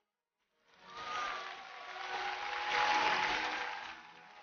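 Studio audience applauding, starting about half a second in and swelling to its loudest near the end, with a few voices cheering in it.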